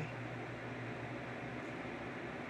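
Steady room tone: an even low hiss with a faint hum underneath, and no distinct events.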